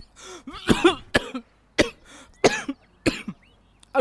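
A man coughing hard, about five rasping coughs in a row, from an irritated throat.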